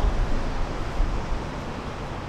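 Steady outdoor city ambience: an even hiss over a low rumble, with no single clear event.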